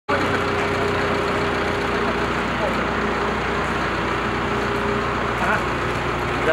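Wheeled excavator's diesel engine running steadily, a constant low hum with a held higher tone that fades out about five seconds in.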